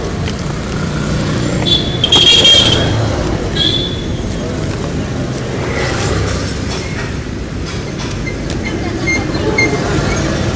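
Street traffic noise with vehicle horns honking twice, about two seconds in and again near four seconds, the first honk the loudest.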